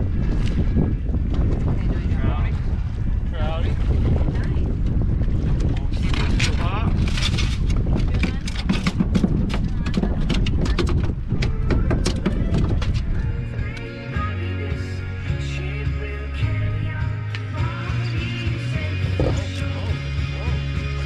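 Wind buffeting the microphone and water around a small boat, with faint indistinct voices. About thirteen seconds in, background music with a steady bass line takes over.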